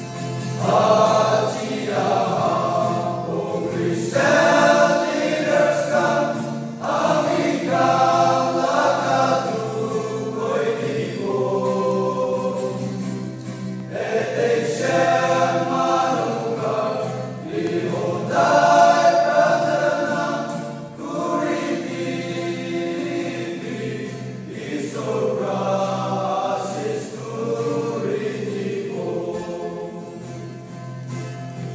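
A male choir singing a gospel song in Nagamese, in phrases of a few seconds with short breaths between them.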